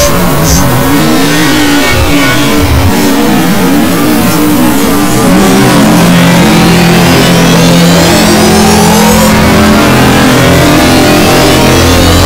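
Loud, heavily distorted and pitch-shifted effects audio. Warbling tones bend up and down in the first half, then rising sweeps climb for several seconds from about midway over a steady low drone.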